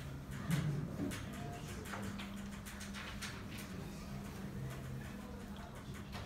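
Chalk tapping and scratching on a blackboard in short, irregular strokes as an integral is written out, over a steady low hum.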